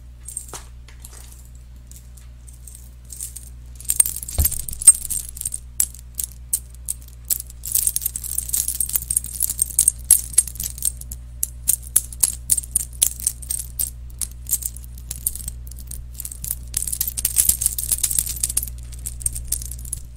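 Small dangling metal trinket handled right at a microphone: rapid clicks and light metallic jingling. Only a few faint clicks come at first; from about four seconds in they run densely, over a steady low electrical hum.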